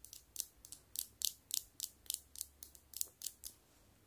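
Fingernails tapping on the small glowing bulbs of a string light: quick, irregular clicks, several a second, which stop about half a second before the end.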